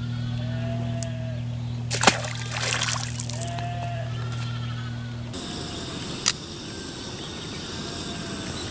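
A splash into river water about two seconds in, followed by a second or so of sloshing, over a steady low hum that stops about five seconds in.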